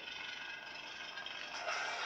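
Crossguard lightsaber's sound board playing the unstable blade's rough, noisy hum through its speaker, swelling louder near the end.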